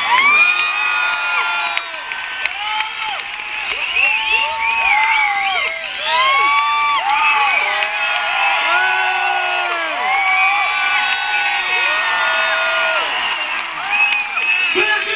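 Large concert crowd cheering during a break in the music: many voices screaming and whooping at once, with scattered claps.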